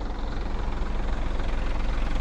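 School bus engine rumbling as the bus draws up, growing steadily louder.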